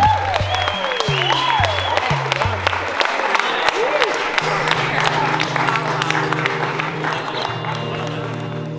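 A crowd applauding and cheering, with whoops early on, over background music with a steady bass line. The clapping thins out toward the end while the music carries on.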